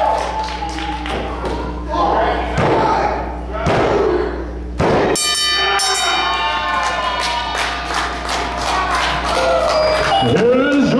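Three thuds about a second apart, a wrestling referee's hand slapping the ring mat for a three-count pinfall over crowd voices. Music starts right after the third slap.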